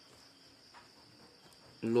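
Soft scratching of a pen writing on paper over a faint, steady high-pitched drone. A man's voice starts near the end.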